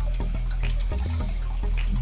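Water running and trickling in a home aquarium over a steady low hum, with a few faint clicks.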